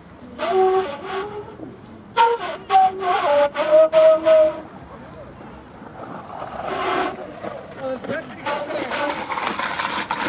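An end-blown flute made of a white tube played in short, breathy notes, a few of them held briefly, with a rush of breath noise about seven seconds in.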